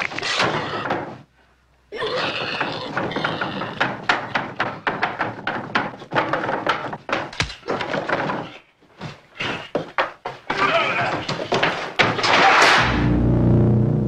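Horror-film soundtrack: a string of thumps and knocks mixed with voice-like sounds, then a heavy steel door slams shut near the end and a low drone begins.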